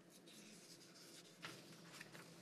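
Faint rustle of paper being handled at a podium microphone, with one short, sharper scrape about one and a half seconds in.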